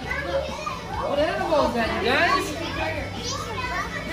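Young children's high voices talking and calling out.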